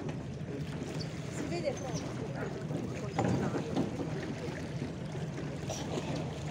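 People talking in French ("c'est bon") over a steady low drone that runs throughout.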